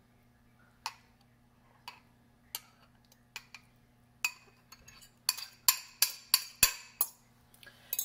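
Metal fork clinking against a glass bowl while the last of an oily garlic-herb marinade is scraped out: single clinks about a second apart at first, then a quicker run of louder clinks in the second half.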